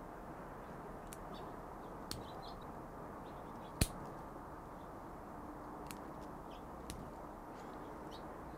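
Milwaukee 7-in-1 combination pliers working 10-gauge solid copper wire: quiet handling with a few faint clicks, then one sharp snap about four seconds in as the jaws cut or strip the wire.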